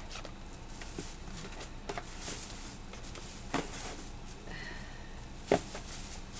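Items and packaging being handled: soft rustling with a few light clicks and knocks, the sharpest one near the end.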